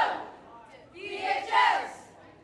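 Group of teenage girl cheerleaders shouting a cheer call together in unison: one shout tails off at the very start and a second, longer one comes about a second in.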